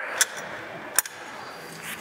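Two light clicks about a second apart from an Airstream's rear window awning arms being turned over by hand, over low room noise.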